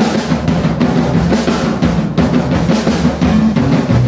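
Live electric band playing, with a busy drum kit loudest over a driving electric bass line and electric guitars.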